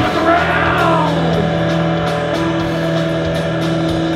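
Live punk-rock band playing loud: distorted electric guitar and bass holding low sustained notes over drums with steady cymbal hits. Near the start a high note slides down in pitch.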